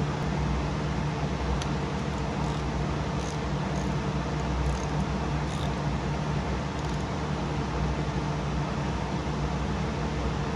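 Steady low machine hum, with a few faint light clicks from gloved hands fitting a timing belt around its tensioner pulley.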